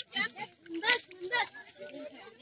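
Voices of several people, children among them, chattering and calling out in short bursts.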